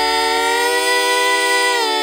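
Several voices holding a sustained harmony chord, a cappella. The chord moves slightly near the end.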